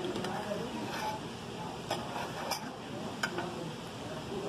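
Metal cutlery clicking and scraping against a plate several times as food is cut and picked up, over a low murmur of diners' voices.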